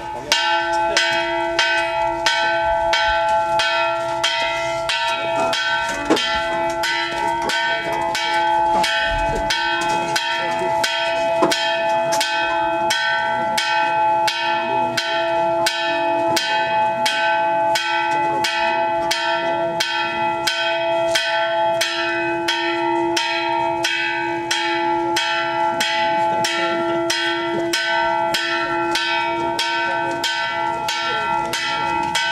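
A single bell struck rapidly and steadily, about two strikes a second, its ringing tone carrying on between strikes.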